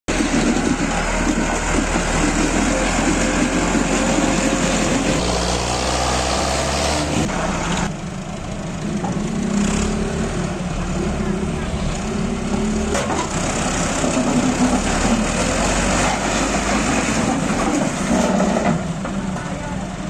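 Diesel tractor engines running hard under load, with an abrupt change about eight seconds in. For the rest of it, a Bull Power 577 tractor's engine runs as the tractor pushes a stalled road roller to try to start it, with men's voices over it.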